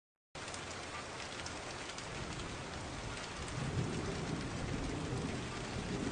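Steady rain falling, with a low rumble of thunder building in the second half. The sound comes in after a brief gap of silence at the start.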